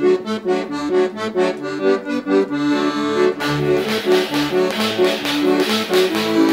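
A recorded song begins: an accordion plays a quick, bouncy melody of short notes, and percussion with cymbals joins about three and a half seconds in.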